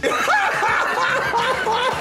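A man laughing loudly and hard, in a steady run of short repeated 'ha' bursts, about three a second.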